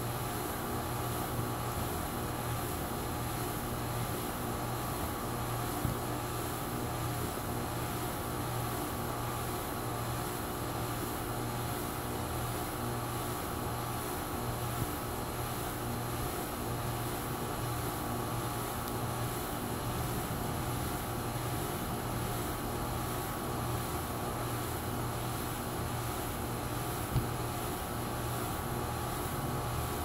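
Crompton Greaves High Breeze ceiling fan coasting with its power cut: a steady low whir with a few faint clicks.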